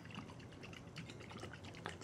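Rice vinegar trickling faintly from a bottle onto cooked white rice in a bowl.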